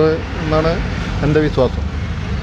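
A man speaking in short phrases over a steady low hum of vehicle and street noise.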